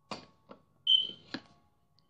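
Light knocks of a small plastic toy figurine against a lamp base and pole, three short taps, with one short high-pitched beep about a second in that is the loudest sound.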